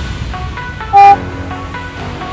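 A single short, loud electronic beep about a second in: an interval-timer tone marking the end of an exercise set. Electronic dance music plays underneath.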